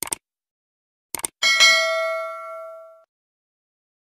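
Subscribe-button animation sound effect: quick mouse clicks, then a bright notification-bell ding about a second and a half in that rings out and fades over about a second and a half.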